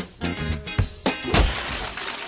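Music with strong beats, cut off about a second and a half in by loud glass shattering, followed by tinkling shards.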